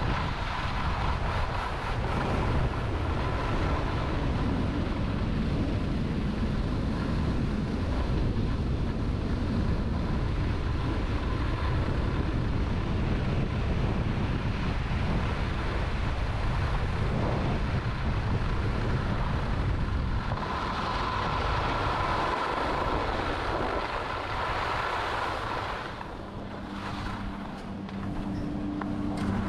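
Skis sliding and carving on groomed snow, with steady wind rushing over the camera microphone from the speed of the descent; the scraping grows harsher for several seconds in the second half. Near the end the skiing quiets and a steady low hum of chairlift machinery comes in.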